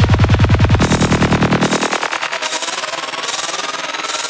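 Psychedelic trance music with a rapid, machine-gun-like pulsing beat. The heavy rolling bass drops out about halfway through, leaving the fast high pulses and a synth sweep slowly rising in pitch, a breakdown building up.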